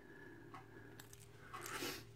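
Faint handling sounds of a key on a plastic key tag being moved in the hand: a few light clicks, then a brief rustle near the end.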